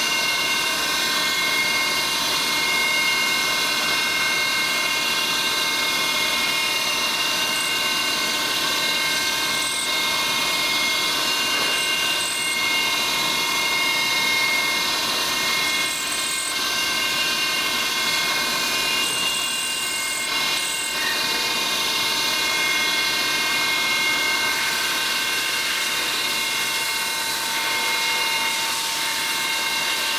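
CNC milling machine spindle running a small end mill that cuts a bearing tang slot into a Lotus 907 aluminium main bearing girdle. It makes a steady high-pitched whine of several tones over the hiss of cutting, with a few brief higher squeaks through the middle.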